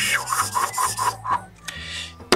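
Thick felt-tip marker rubbed quickly back and forth over paper to shade, a run of short scratchy strokes in the first second and a half. Background music plays underneath.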